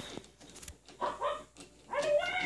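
A short, high-pitched call about a second in, and another starting near the end.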